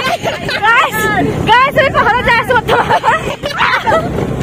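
Several voices talking animatedly, loud and close, over the low steady hum of a moving scooter's engine.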